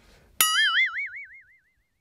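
Cartoon 'boing' sound effect: one sharp twang, about half a second in, whose pitch wobbles up and down as it fades away over about a second.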